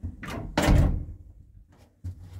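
An elevator's hinged landing door swinging shut against its frame: a light knock, then a loud thud about two thirds of a second in that rings out briefly.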